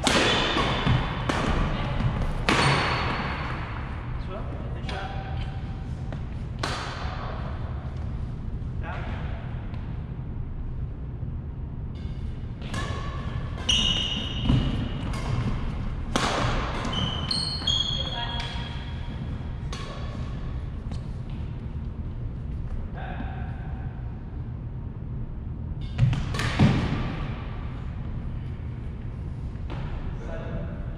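Badminton rally: rackets striking the shuttlecock in sharp, irregular cracks, with short high squeaks of sneakers on the hardwood gym floor, over a steady low hum.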